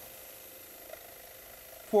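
Faint, steady sound of a scroll saw running, its fine blade cutting out a wooden letter.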